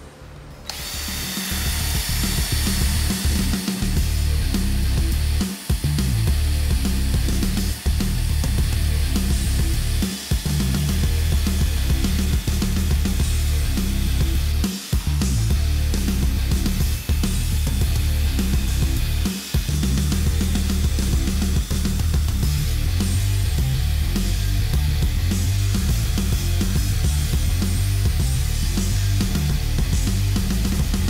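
Rock music with a heavy beat, mixed with a cordless drill spinning a wire brush bit against the rusty steel shaft of a barbell to scrub the rust off.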